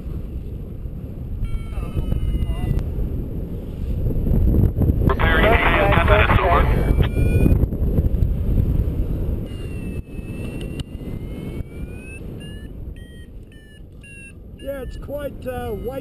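Steady wind rush over the camera microphone of a paraglider in flight. Faint electronic beeps and slow rising and falling tones, like a flight variometer's climb signal, come through it, mostly in the second half.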